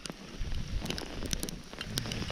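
Wind rumbling against the microphone, with a few faint ticks scattered through it.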